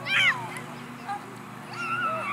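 A young child's high-pitched shout, brief and falling in pitch, just after the start; another high voice calls near the end.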